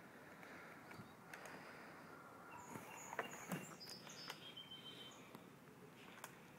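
Faint outdoor ambience with a few short, high bird chirps in the middle, and a few light clicks.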